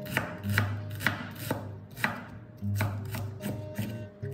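A cleaver chopping red onion on a bamboo cutting board: sharp knife strokes about two a second, then lighter, quicker taps near the end.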